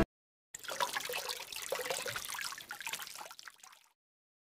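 Water trickling and bubbling, starting about half a second in and fading out near the end.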